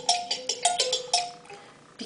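A small hand-held red toy playing a tinkling music-box-like tune, a quick run of short plinking notes that dies away about a second and a half in.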